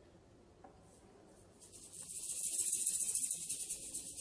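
Unpitched hissing and scratching noise from a violin-and-piano duo playing in an extended-technique style. It is faint at first, then about one and a half seconds in swells into a rapidly fluttering hiss.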